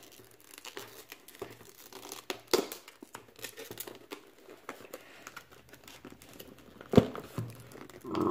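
Clear plastic blister packaging crinkling and crackling as it is pried and peeled open by hand. A few sharper snaps of the plastic come through, the loudest about seven seconds in.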